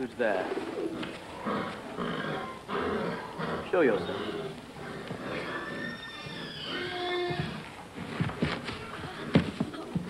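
Indistinct human voices: short wordless cries and exclamations rising and falling in pitch, at a moderate level.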